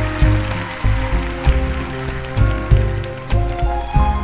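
Live band playing a slow soul-ballad intro, with a strong bass beat about every 0.6 s and held string and keyboard notes, under audience applause that thins out near the end.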